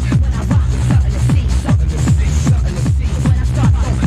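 Hardcore techno with a fast, driving kick drum, about three kicks a second, each kick dropping sharply in pitch over a heavy bass.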